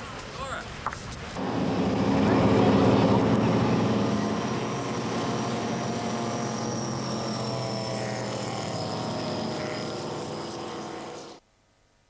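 Powerboat engine running at high speed while towing water skiers. It comes in suddenly about a second in, is loudest a couple of seconds later, then eases slowly with a slight fall in pitch as the boat passes and draws away. It cuts off abruptly near the end.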